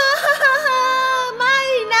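A woman wailing a long, drawn-out "no!" (Thai "mai na") in a high, crying voice, the pitch wavering at first and then held.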